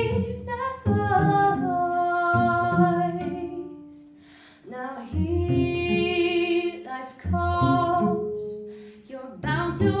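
A woman singing long held notes over a bowed cello accompaniment, with a brief lull about four seconds in.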